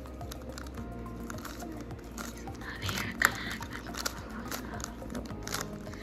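Clicks of a magnetic GAN Skewb M puzzle being turned in hand, its pieces snapping into place, with one sharper click about three seconds in. Background music plays underneath.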